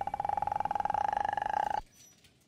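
A shrill, fast-warbling shriek held at one pitch for just under two seconds, then cut off suddenly.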